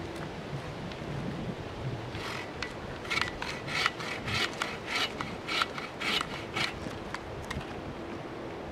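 Bow saw cutting a branch held on a log. The saw starts about two seconds in and makes steady back-and-forth strokes, about two a second, then stops shortly before the end.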